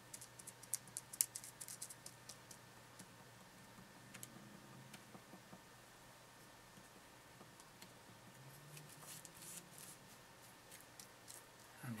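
Faint, quick clicks and crackles of a thin tool jabbing through plastic wrap into clay to texture it like skin, mostly in the first two seconds. After that it is mostly quiet with a few scattered ticks, and a light crinkling of the plastic near the end.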